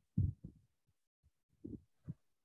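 Faint, low, muffled thumps in two short clusters, one just after the start and one near the end, with silence between.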